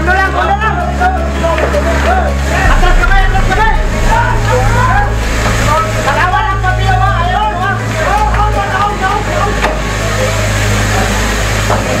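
Several people shouting and calling out over one another, with a steady low engine drone underneath that shifts pitch about three seconds in.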